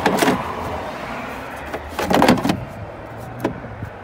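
Plastic fuse box cover under a truck's hood being handled and pressed down onto the box: two short rattling bursts about two seconds apart, then a light click near the end.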